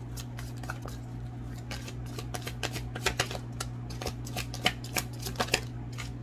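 Tarot cards being shuffled and handled: a run of quick, sharp card flicks and snaps, thickest in the second half, over a steady low hum.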